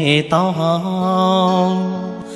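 A song with musical backing: a singer's voice slides between notes, then holds one long steady note from about halfway in. The lyrics are in Hmong.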